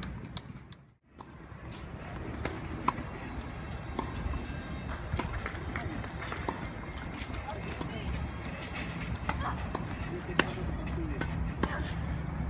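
Outdoor tennis-court ambience: a steady low rumble with faint distant voices and scattered short sharp taps, the loudest about three seconds in and again near ten seconds. The sound drops out briefly about a second in.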